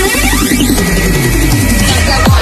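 Electronic dance remix of a Chinese pop song in the manyao (slow-rock dance) style, with a pulsing bass. A synth sweep dips and rises about half a second in, and a falling tone slides down through the middle, as a transition effect.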